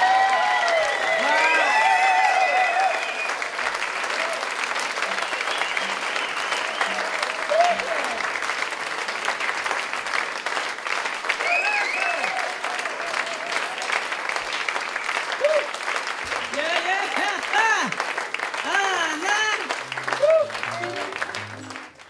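Concert audience applauding and cheering at the end of a song, with many shouts and whoops over steady clapping. The sound fades out near the end.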